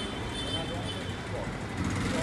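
Background ambience: faint, indistinct voices over a steady low rumble, with no single sound standing out.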